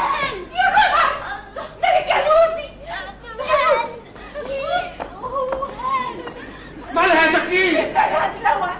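High-pitched women's voices giving wordless, wavering cries in bursts, mixed with laughter; the loudest outburst comes near the end.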